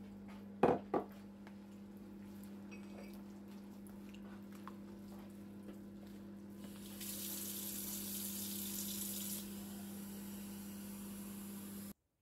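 Hands mixing and working wet flour and yeast water into dough in a plastic bowl. Two sharp knocks come about a second in, and a hiss lasts about two and a half seconds in the second half, over a steady low hum.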